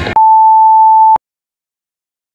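A loud electronic interval-timer beep: one steady tone about a second long, marking the end of a workout interval, that stops abruptly with a click. The workout music cuts off just before it.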